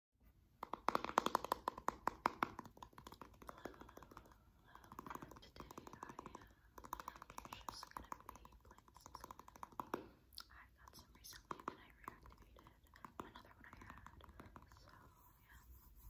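Fingernails tapping and clicking rapidly on a small plastic slime container, in quick runs of taps.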